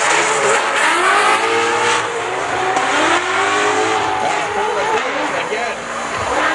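Drift car engine revving hard, its pitch swinging up and down with the throttle as the car slides, over a steady haze of tyre noise from the wheelspin.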